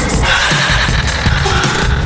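Loud, dense electronic noise music: a continuous low rumble under rapid crackling, with faint held tones that shift in pitch.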